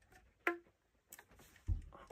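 Keys of a Schiller alto flute clicking under the fingers as it is handled: a sharp clack about half a second in with a brief low pitched ring, a few fainter ticks, then a soft low thump near the end.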